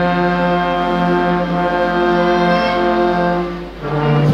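A brass band holding one long, loud sustained chord, which dies away briefly near the end before the band comes back in.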